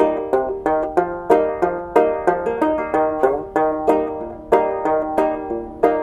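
Clawhammer-style banjo played solo: a steady rhythm of plucked, ringing notes.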